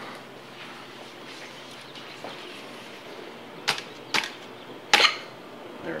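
Three sharp knocks and clicks in the second half, the last the loudest, as a wooden reproduction buttstock is worked loose from the receiver of a Winchester 1895 lever-action rifle.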